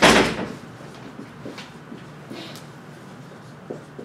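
A short, loud bang right at the start, then faint squeaks and strokes of a dry-erase marker writing on a whiteboard.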